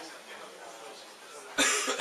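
A person coughing close to the microphone: one short, loud cough near the end, over faint background voices.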